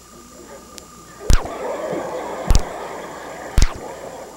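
Three sharp thumps about a second apart, with a studio audience laughing from the first one on.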